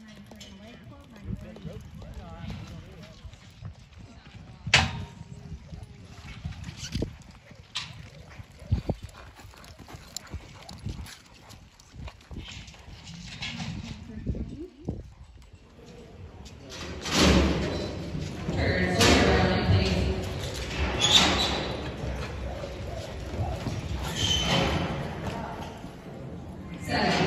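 Horses moving on arena dirt, with hoofbeats and scattered knocks, under people talking in the background. About two-thirds of the way through, the voices and general noise grow clearly louder.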